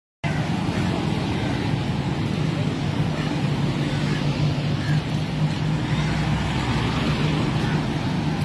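Steady road traffic noise: vehicle engines and tyres on the road, with a constant low hum underneath.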